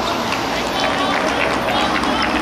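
Steady outdoor background noise with faint, distant voices of players calling out during a football match.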